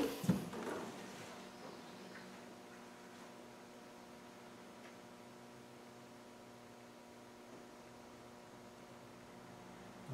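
Quiet room tone with a faint, steady electrical hum, after a few light handling knocks in the first second.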